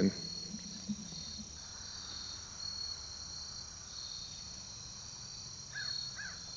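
Crickets chirping steadily in a high-pitched field chorus: one continuous tone with a second, pulsing trill beneath it. A bird's call starts right at the end.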